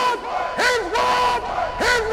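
Voice-like chanted calls over the outro logo sound track, repeated again and again. Each call starts with a bright attack, rises to a held note and falls away.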